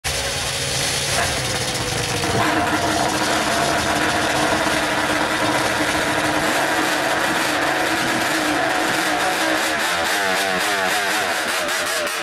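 Snowmobile engines running hard in a drag race, loud and steady, the pitch climbing about two seconds in and wavering near the end.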